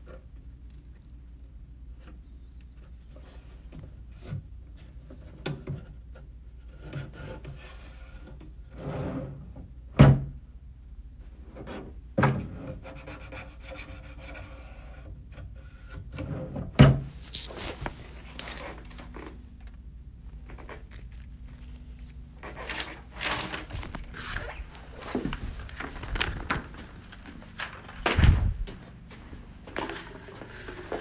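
Hands working at a wooden desk drawer: intermittent rubbing and scraping broken by sharp wooden knocks, the loudest about ten and seventeen seconds in, the second as the drawer is pushed shut.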